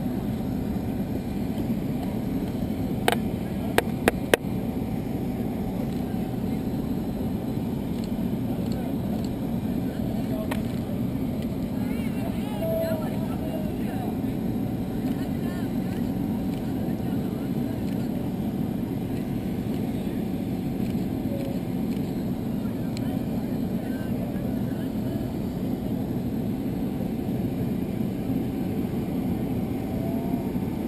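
Steady low engine drone, the ongoing machinery noise of an airport apron with a parked jet. Faint voices sit underneath. A quick run of four sharp clicks comes about three to four seconds in.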